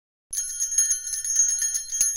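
Bells jingling in a rapid, even shake, starting a moment in: a holiday intro sting.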